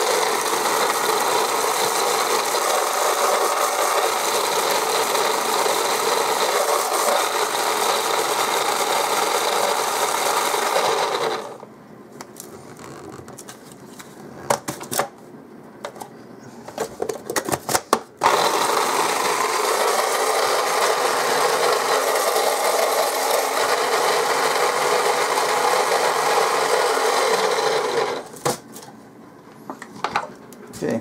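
Small electric food processor running loud, its motor whirring with hard pretzel pieces rattling in the bowl as they are crushed. It stops about 11 seconds in, a few seconds of knocks and clatter follow as the container is handled, then it runs again for about ten seconds and stops near the end.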